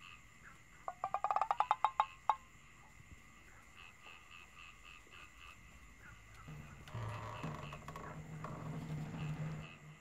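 Night-time ambience: faint insects chirping steadily, with a small animal's call about a second in, a fast run of about a dozen clicking pulses lasting just over a second. In the last few seconds a low, muffled hum rises under it.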